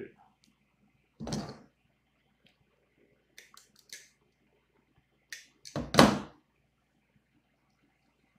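Copper wire being trimmed with a hand cutter and handled on a table: a few light clicks and snips between two thumps, the louder one about six seconds in.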